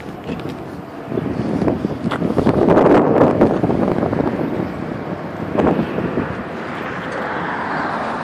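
Outdoor street noise on a phone's microphone. It swells about two seconds in and slowly eases off, with wind and rubbing clicks from the phone moving against clothing.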